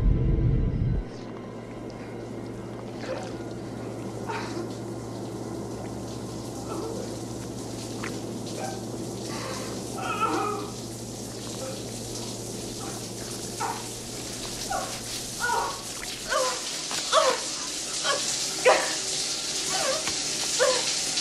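A low rumble that cuts off about a second in, then a steady low machinery hum with scattered short squeaky chirps. About four seconds before the end a shower starts running, a steady hiss of spraying water, with more short squeaks over it.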